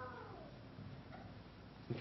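Pause in amplified speech in a church: the preacher's voice dies away into the room's echo, leaving low room tone with one faint, brief high sound about a second in.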